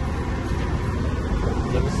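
Steady low drone of a truck's engine together with road noise, heard from inside the cab while driving.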